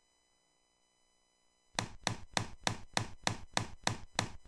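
Near silence, then a quick, even series of sharp hits, about three or four a second, starting about a second and a half in: a produced sound effect opening a video intro.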